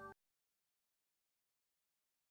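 Near silence: the closing music cuts off just after the start, leaving dead digital silence.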